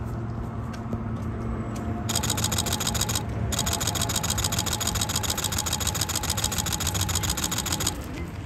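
Camera shutter firing in rapid bursts, about ten clicks a second, pausing for the first two seconds and briefly after three seconds. Under it a steady low hum of traffic.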